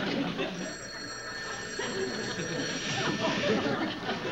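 Telephone bell ringing, a steady high ring that starts about half a second in.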